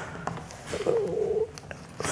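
Faint handling of a sheet of paper at a microphone, a few light clicks, with a brief soft wavering murmur about a second in.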